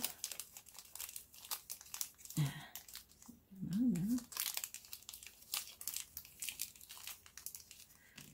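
Small clear plastic bead bag crinkling and crackling as it is worked open by hand, in many quick irregular crackles, with a short murmured voice sound about two and a half seconds in and again about a second later.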